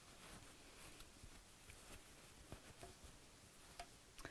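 Near silence with faint rustling and scratching as hollow-fibre toy filling is pushed by hand into a burlap pumpkin, with a few soft clicks in the second half.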